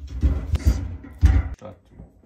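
Bumps and knocks as wooden honey frames are set into the steel basket of a honey extractor, with two sharper knocks and heavy low thumps, then a lull near the end.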